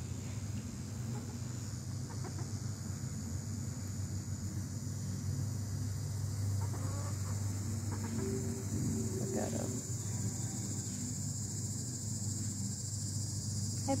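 Domestic hens giving a few short clucks now and then, the clearest in the middle, over a steady high-pitched chirring of insects.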